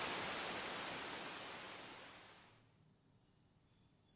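A faint, steady hiss, like rain or static, fading away over about two and a half seconds, then near silence with a few faint high chirps near the end.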